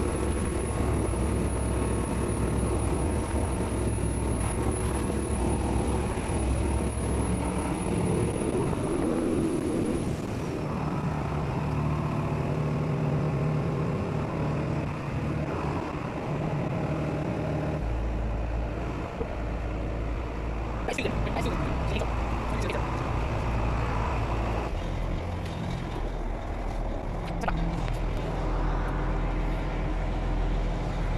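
Fishing boat's engine running under way, with water rushing along the hull. A thin high whine stops about a third of the way in, and the low hum grows heavier a little past halfway.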